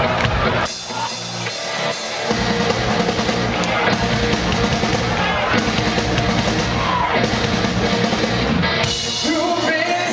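Live rock band playing with a lead singer, drum kit and bass. The low end drops out for about a second and a half near the start, then the full band comes back in.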